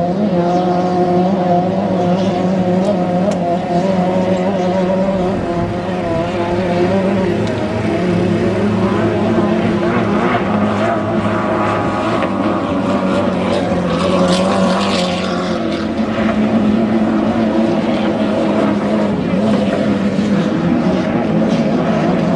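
Racing engines of 2.5-litre inboard hydroplanes running flat out, a steady high-revving drone with spray hiss, growing brighter as a boat passes close around the middle.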